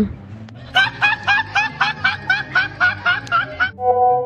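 A high-pitched, rapid snickering laugh of short repeated pulses, about five a second, lasting some three seconds. Near the end it gives way to a held musical note.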